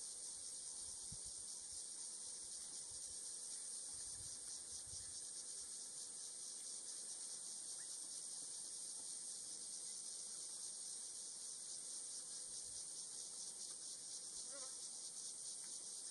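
Steady, high-pitched insect chorus with a fine, rapid pulse, unchanging throughout.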